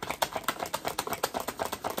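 Tarot deck being shuffled by hand: a quick, even run of crisp card clicks, about a dozen a second.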